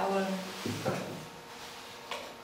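A woman's voice speaking softly in short phrases, with a brief knock just past halfway through.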